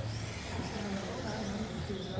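Electric stock-class RC buggies running on an indoor carpet track, heard in a hall full of echo over a steady low hum, with indistinct voices in the background.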